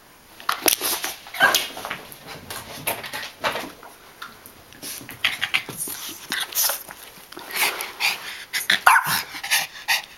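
Rat terrier barking in quick, irregular bursts, starting about half a second in, with a few high-pitched whines among the barks.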